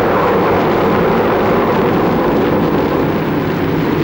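Storm sound effect on an old film soundtrack: a loud, steady rushing roar of wind and churning water.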